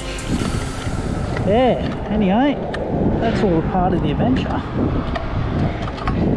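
Yamaha Ténéré 700's parallel-twin engine running while under way, with steady wind noise on the microphone. A voice makes a few short sounds that rise and fall in pitch, without clear words.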